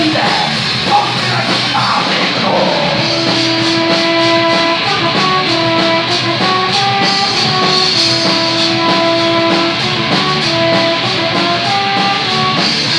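Rock band playing live: distorted electric guitar and drums at full volume, with a steady drum beat. From about three seconds in, a melody of long held notes rises and falls over the band.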